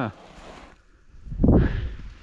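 Dry reeds rustling as someone pushes through them on foot, with a loud low thump about a second and a half in.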